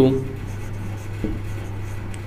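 Felt-tip marker writing on a whiteboard, quiet rubbing strokes, over a steady low hum.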